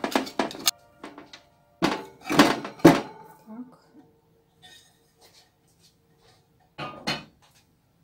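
A glass loaf pan knocking and clattering on a metal baking tray as a freshly baked loaf is turned out of it: several sharp knocks at the start, the loudest about two to three seconds in, and another knock near the end.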